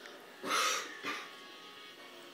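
A dog being petted gives a loud, noisy breathy sound about half a second in, followed by a shorter one, with faint music underneath.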